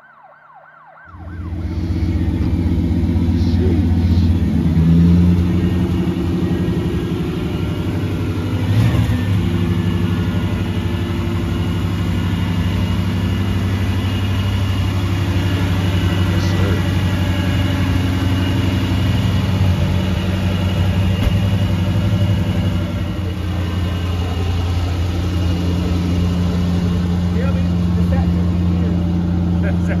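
A car engine idling steadily with a deep, low hum, starting about a second in, likely the 1990 Chevrolet Caprice's engine.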